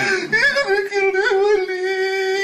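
A man crying out in a high wail: a brief wavering whimper, then from about half a second in one long note held steady.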